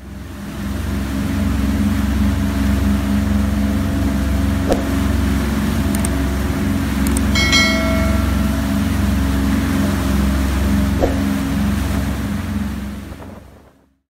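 Steady low rumble of a motor yacht's engines underway with the rush of its wake, fading in at the start and out at the end. A few clicks and a short bright chime come about halfway through.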